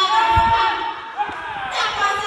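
Speech, with a single low thud about half a second in.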